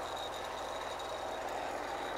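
MTZ-80 tractor's four-cylinder diesel engine running steadily, with a faint steady high whine above it.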